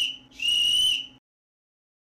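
A referee's whistle blowing one long, steady, shrill blast that stops about a second in.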